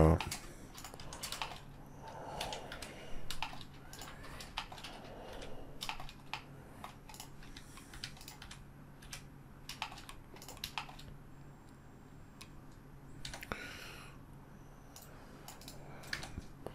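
Computer keyboard keys and mouse buttons clicking irregularly, a few presses a second, over a faint low steady hum.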